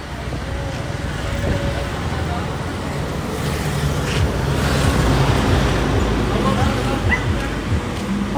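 A vehicle engine idling under a steady low rumble of traffic noise, with faint voices in the background.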